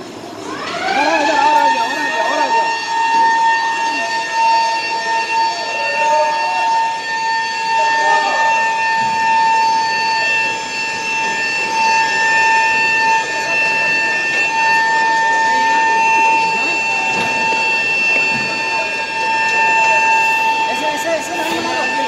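Alarm siren winding up over about a second and a half, then sounding one steady, unbroken tone.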